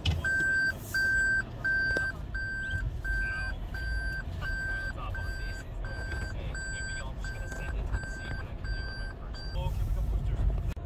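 A car's reversing warning beep sounding inside the cabin, a steady single-pitched beep repeated about three times every two seconds while the car backs up, stopping shortly before the end. A low road and engine rumble runs underneath.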